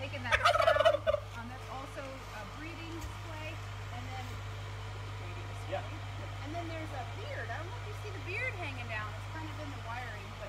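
Bronze turkey tom in strut display gobbling once about half a second in: a loud, rapid warbling call lasting under a second.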